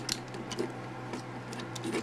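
Light, scattered clicks and taps of hard plastic toy parts on a Transformers Human Alliance Sideswipe figure as its arms are folded in by hand.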